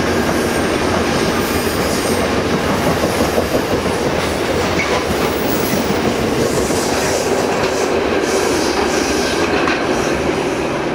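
A freight train of tank wagons rolling past, its wheels running steadily on the rails.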